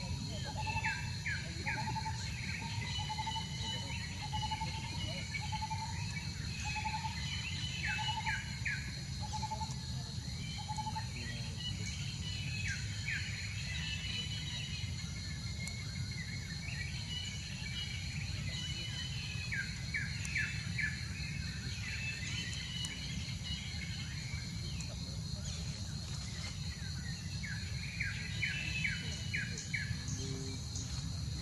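Wild birds calling outdoors. One bird repeats a short note about once a second for the first third, and bursts of rapid chirps come five times, every several seconds, over a steady high buzz and a low rumble.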